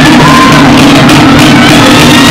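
Live Tahitian drum ensemble, wooden tōʻere slit drums struck with sticks over large pahu drums, playing a rapid, loud beat.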